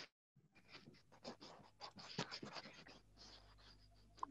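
Near silence with faint, irregular scratchy ticks and clicks scattered through it, after a brief total audio dropout at the very start.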